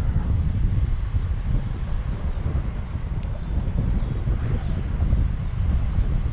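Wind rushing over the camera's microphone in paraglider flight: a loud, steady low rumble with no break.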